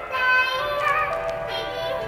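Background music with a singing voice holding long notes.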